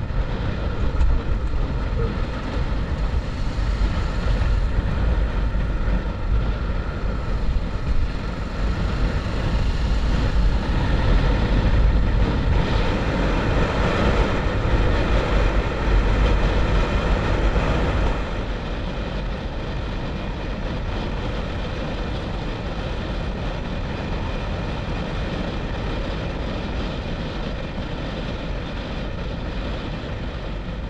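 Motorcycle riding at highway speed: steady wind rush on the microphone over the engine's running drone. The noise eases a little about two-thirds of the way through.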